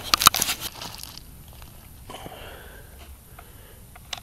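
Creek gravel crunching and clicking as loose stones are shifted, with a sharp clack about a quarter second in. After about a second only a few faint ticks remain.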